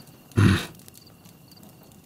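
A man's short breathy vocal huff, like a quick laugh or grunt through the nose, about half a second in. Around it only a low background with faint scattered clicks.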